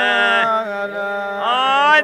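Albanian polyphonic folk singing in the Prespa tradition: several voices sustain a wordless vowel over a steady low drone, and the upper voice slides upward in the second half.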